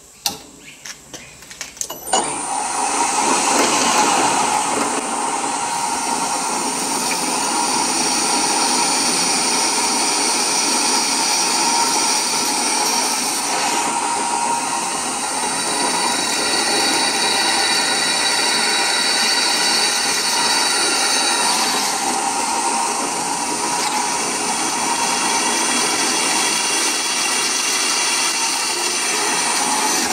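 Drill press drilling through a plywood template into steel plate. A few knocks come first, then about two seconds in the press runs steadily with the whine of the bit cutting, its tone changing twice.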